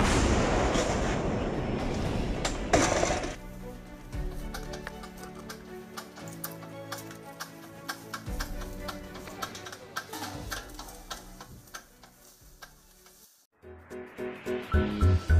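A 2S5 Giatsint-S 152 mm self-propelled gun fires: one loud blast whose rumble runs on for about three seconds, with a second sharp bang near its end. Background music with steady notes and a ticking beat fills the rest.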